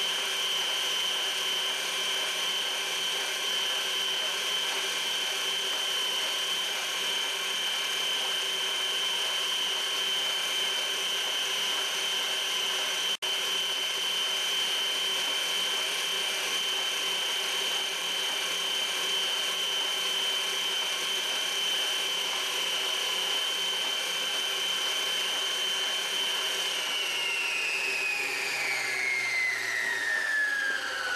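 Kenmore Elite Ovation stand mixer motor running, a steady high whine as it beats pound-cake batter. It cuts out for an instant about halfway, and over the last few seconds its pitch slides steadily down as the motor slows.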